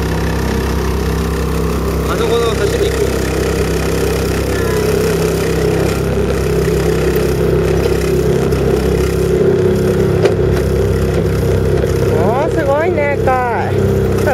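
Small motorboat's engine running steadily under way, a constant drone with no change in speed.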